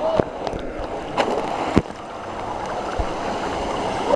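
Waterfall and stream water rushing steadily close to the microphone, with a few sharp knocks about a second apart.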